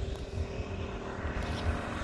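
Road traffic passing, a steady engine hum, with wind buffeting the microphone in uneven low rumbles.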